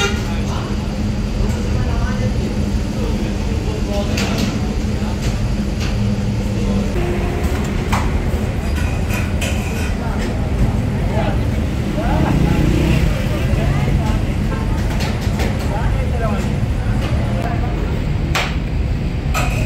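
Steady low mechanical hum with people talking in the background and a few light clicks.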